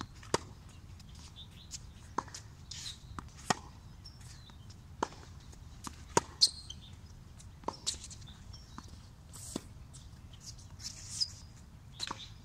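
A tennis ball being struck by racquets and bouncing on a hard court in a baseline warm-up rally. Each is a sharp pock, every second or two, and the loudest come when the near player hits.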